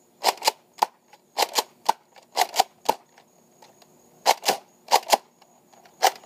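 Nerf Fortnite BASR-L bolt-action blaster being worked: sharp plastic clacks in quick groups of two or three, about a dozen in all, with a pause of over a second just past the middle.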